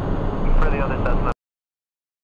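A man's voice over the steady cockpit noise of a Cessna Citation 501 jet, cut off suddenly a little over a second in, leaving silence.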